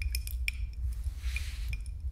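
Ice clinking against the sides of a glass tumbler as it is swirled: several sharp clinks in the first half second, a soft swish, then one more clink near the end, over a steady low hum.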